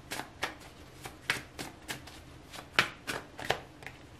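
A tarot deck being shuffled by hand: a run of irregular, crisp card snaps and slaps, the loudest just under three seconds in.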